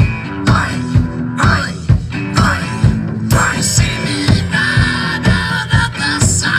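Instrumental rock music: a Pearl drum kit played to a steady rock beat, about two hits a second, with electric guitar and bass.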